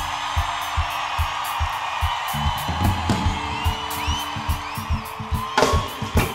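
Live rock band playing an instrumental passage: a steady kick-drum pulse under held guitar and bass notes. Near the end, loud drum and cymbal hits bring the full band back in.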